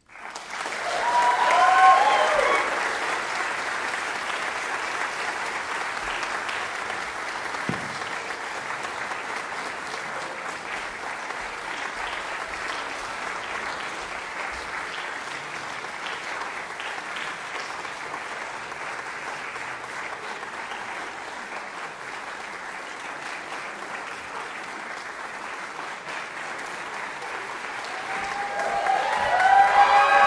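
Audience applause breaking out right after the last note, peaking within a couple of seconds and then holding steady, with a few voices whooping near the start. The applause swells again near the end with more whoops.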